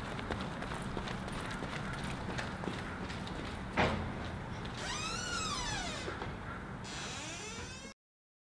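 Hurried footsteps on concrete pavement, then a sharp knock about four seconds in as the school entrance door is reached, followed by a squeak that rises and falls in pitch as the door swings open.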